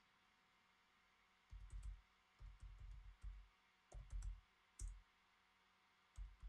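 Typing on a computer keyboard: several quick runs of keystrokes, each key a soft click with a dull thump. The typing starts about a second and a half in and stops around five seconds.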